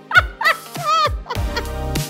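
A woman laughing hard: a few loud, high-pitched cackling bursts in the first second or so, over background music.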